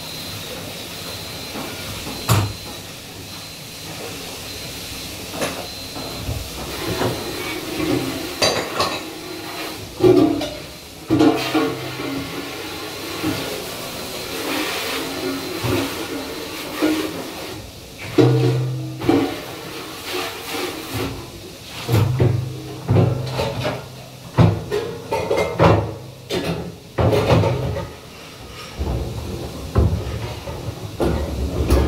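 Plates, cups and plastic dish racks clattering and knocking as they are handled at a commercial dishwashing station, over a steady hiss of water and machine noise.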